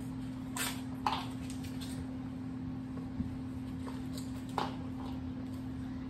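A steady low electrical hum from the room, with a few brief faint clicks and taps.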